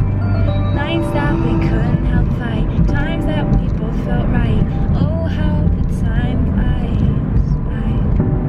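A woman singing her own song unaccompanied in a moving car, her voice sliding between held notes over the steady low rumble of road noise in the cabin.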